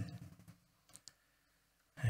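Near silence in a pause between spoken sentences, with two faint, short clicks about a second in, close together.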